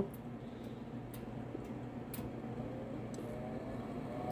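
Furnace combustion blower (draft inducer) motor spinning up, a faint whine rising slowly in pitch toward the end over a steady low hum, with a few light clicks.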